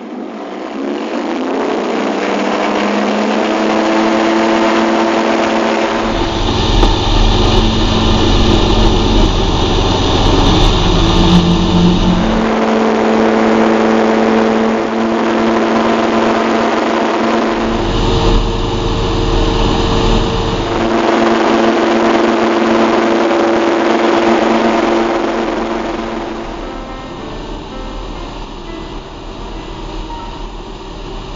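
Searey amphibian's light aircraft engine and pusher propeller going to takeoff power, rising in pitch over the first few seconds, then running steadily through the takeoff roll and climb. A heavy low rumble comes and goes twice over the engine, and the sound drops off somewhat near the end.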